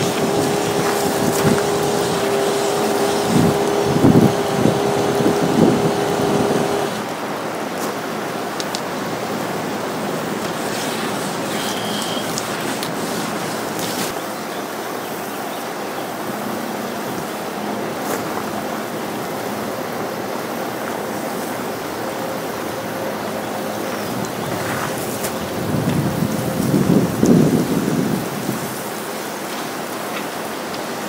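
Small 12-volt DC pump of an IPC RO-Mote chemical unit running with a steady hum, with a few knocks, for about the first seven seconds, then cutting off. After that comes the steady hiss of water spraying from the water-fed pole's brush onto window glass.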